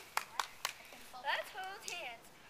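Three scattered hand claps, then a short, high-pitched call from a voice.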